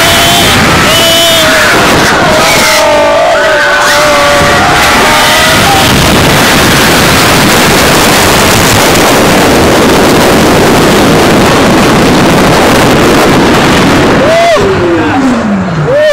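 Loud, steady rush of wind over a phone microphone as a roller coaster car runs along its steel track at speed. Riders yell and scream in the first few seconds, and near the end a single falling yell comes as the roar dies down.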